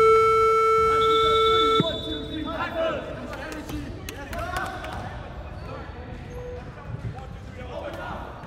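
Gym scoreboard buzzer sounding one long steady tone for nearly two seconds and cutting off sharply, the signal that the timeout is over. Shouted voices follow in the hall.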